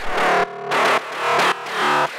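Metallic FM synth bass layer from Ableton's Operator, built from sine waves with short, punchy envelopes and a second oscillator a few octaves below the main one, playing a repeating bass line of about two gritty notes a second.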